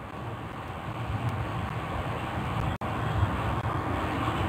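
Steady background noise, a hiss with a low rumble underneath, cut by a brief dropout about three seconds in.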